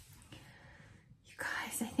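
A quiet pause with room tone, then from just over a second in a woman's breathy, whispered start of speech that runs into words near the end.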